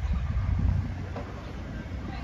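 A low, uneven outdoor rumble, strongest in the first second and then easing off.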